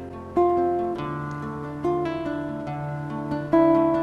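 Acoustic guitar playing a song's introduction: about four chords struck and left to ring.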